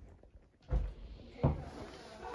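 An interior door being opened: two dull knocks, a heavier one just under a second in and a sharper one about a second and a half in, as the latch and door are handled.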